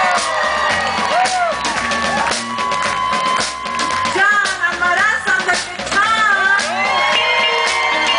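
Live band playing: electric guitar, electric bass and drum kit, with voices shouting and whooping over the music.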